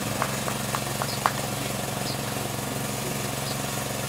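Steady low mechanical hum with a fine even pulse, and a few faint short higher sounds over it.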